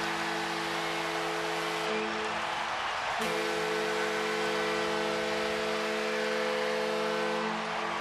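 Arena goal horn sounding a steady, multi-tone chord over a cheering crowd after a home-team goal, with a short break about two to three seconds in.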